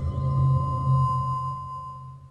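Logo sting sound effect: a deep hum with a steady ringing tone above it, beginning to fade out near the end.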